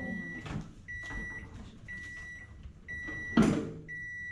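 Microwave oven beeping at the end of its timed cycle: a steady high beep about once a second, each lasting about half a second, five times. Near the end a loud clunk comes as the microwave door is opened.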